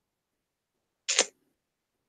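Silence, broken once about a second in by a short, sharp sound lasting about a quarter second.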